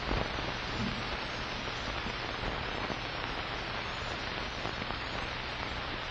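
Steady hiss with a low hum underneath: the background noise of an old kinescope film soundtrack, with no program sound over it.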